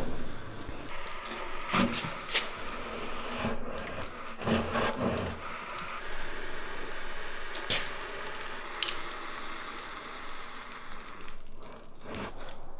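Electric hot knife's heated wire loop melting a groove into the EPS foam core of a structural insulated panel, deepening the recess for lumber, with a soft, steady crackling sizzle. A few light knocks come about two, five and eight seconds in.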